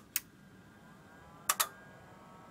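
Stanford Research SR650 programmable filter being switched on: a sharp click at the start, then a faint steady whine as it powers up, and a quick double click about one and a half seconds in from its switch and relays.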